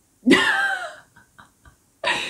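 A woman's burst of loud laughter, falling in pitch and trailing off into a few faint short breaths.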